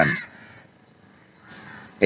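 A single harsh, crow-like bird call lasting about half a second near the end.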